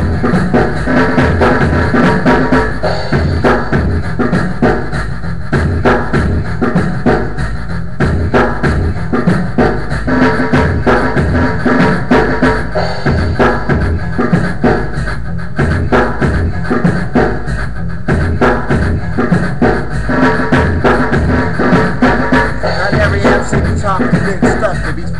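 A programmed drum beat from a beat-making machine looping: a steady, repeating drum pattern with deep low hits.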